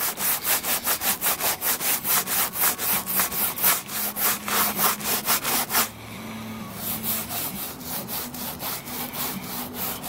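A stiff plastic-bristle brush scrubbing a vinyl car door panel wet with cleaner, in quick back-and-forth strokes about five a second. About six seconds in, the strokes stop and give way to a softer, quieter rubbing as a cloth wipes over the vinyl.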